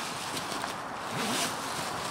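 Horticultural fleece plant-protection bag being unzipped and pulled open, the fabric rustling steadily.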